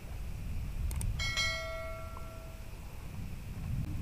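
A short click, then a bright bell chime that rings for about a second and a half and fades: the sound effect of a YouTube subscribe-button and notification-bell animation.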